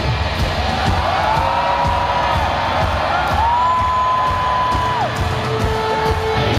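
Live rock duo of distorted electric guitar and drums playing loud, while the singer lets out two long yelled notes, each sliding up into a high held pitch and dropping off at the end, the first about a second in and the second about three and a half seconds in.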